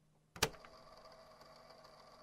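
A single sharp click about half a second in, then a faint steady hum and hiss: the quiet lead-in at the start of a lo-fi hip hop track.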